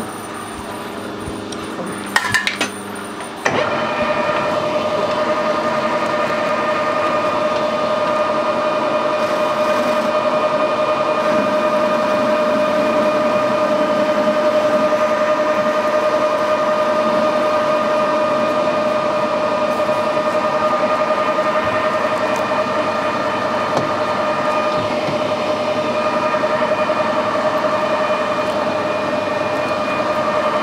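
A few knocks, then a metal lathe starts up about three and a half seconds in and runs steadily with a constant whine while facing the sawn end of an aluminium bar.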